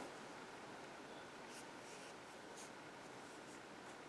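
Near silence: faint room tone with two faint, brief rustles of yarn being worked on a crochet hook.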